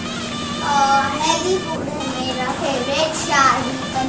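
A child's voice in a sing-song, gliding pitch, heard in two phrases: a short one about a second in and a longer one near the end.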